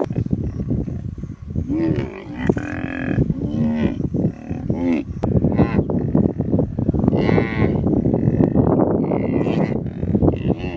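A baby hippo bawling in distress: a run of short, moo-like calls that rise and fall in pitch, clustered between about two and five seconds in. Dense rough noise runs beneath and is loudest in the second half.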